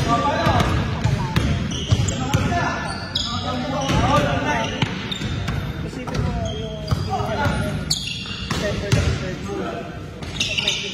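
Pickup basketball on a gym's hardwood court: a basketball bouncing, with repeated sharp thuds, short high sneaker squeaks several times, and players calling out, all echoing in the large hall.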